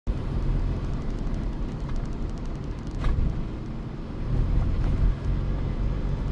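Steady low road rumble of a car driving: tyre and engine noise. A brief knock comes about three seconds in.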